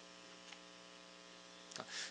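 Faint steady electrical hum with light hiss, the room tone of the microphone and sound system in a pause between speech.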